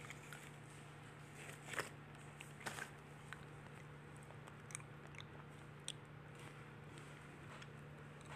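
Faint steady low hum with scattered small clicks and crackles, the loudest of them about two seconds in and again just under three seconds in.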